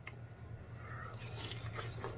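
Faint wet mouth sounds of biting into a soft, sauce-soaked boiled potato, over a low steady hum.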